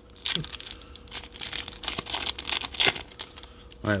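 A 2021 Topps Chrome Update trading-card pack's wrapper being torn open and crinkled by hand, an irregular crackling that goes on throughout.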